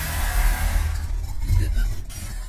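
Intro sound design for a logo animation: a deep, steady bass rumble under a rushing, hissing noise, easing off near the end.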